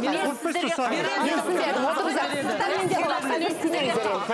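Several people talking at once, their voices overlapping throughout.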